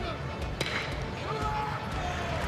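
A metal baseball bat strikes a pitched ball with one sharp ping about half a second in, over steady ballpark crowd noise.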